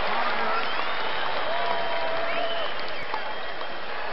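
Crowd applause, steady throughout, with indistinct voices calling out through it.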